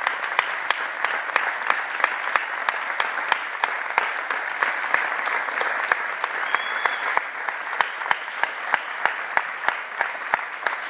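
Audience clapping steadily, with sharp claps standing out at an even pace of about three a second.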